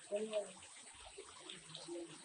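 A voice speaking briefly, then a faint steady hiss with traces of distant voices.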